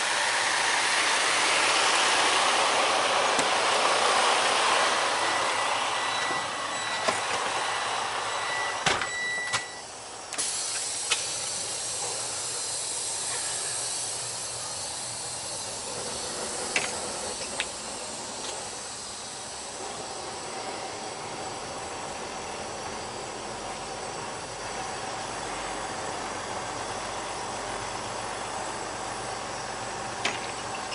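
Idling semi truck with a steady hiss, loudest at first outside beside the truck, then quieter and more muffled once a cab door shuts about ten seconds in. A few sharp clicks follow.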